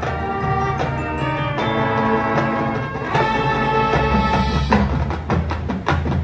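Marching band playing held chords that change twice, with a quick run of drum and percussion hits near the end.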